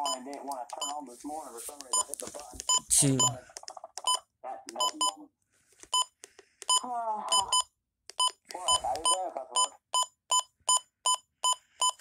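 Midland WR120B weather radio beeping with each button press while its clock is set: a run of short, identical high beeps, spaced irregularly at first, then about three a second in quick succession near the end.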